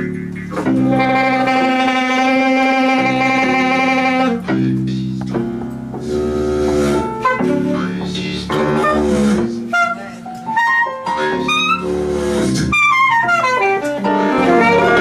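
Free improvised music led by a reedy wind instrument, heard as an alto saxophone: one long held note about a second in, then broken phrases, then quick runs of short notes rising and falling near the end, over other instruments.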